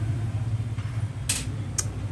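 Steady low background hum with two short clicks, half a second apart, the second near the end.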